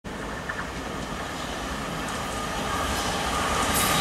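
Thameslink Class 700 electric multiple unit approaching along the track, its running noise growing steadily louder as it nears.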